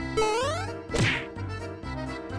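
Light background music with cartoon sound effects laid over it: a short rising whistle-like glide, then about a second in a sharp whack with a falling swoosh, the loudest moment.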